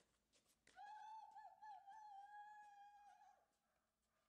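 Puppy giving one faint, high whine of about two and a half seconds, wavering at first, then holding steady before fading.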